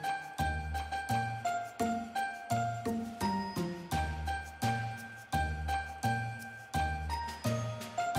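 Background music: a light, chiming melody over a repeating bass line with a steady beat.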